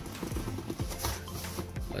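A cardboard shipping box being turned around by hand, giving a run of short scrapes and rustles, over background music.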